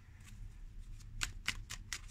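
Tarot deck being handled and shuffled by hand: a few faint, crisp card clicks, most in the second half.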